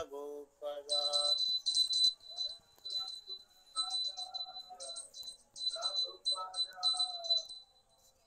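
Small hand bell of an arati offering, rung in repeated spurts of quick shakes, its high ringing tone coming and going. A voice sings faintly beneath it.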